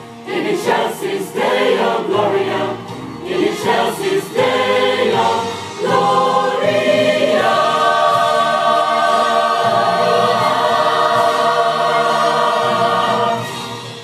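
Mixed church choir singing a Christmas cantata: a few short moving phrases, then one long held chord that fades away near the end.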